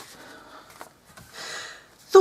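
Plastic-wrapped papercraft packets rustling and sliding across a wooden tabletop as a hand pushes them aside, in soft bursts with a light click just under a second in.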